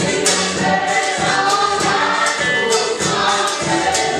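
Live gospel worship music: a woman leading the song on a microphone with a congregation singing along, over a drum kit whose cymbals keep a steady beat.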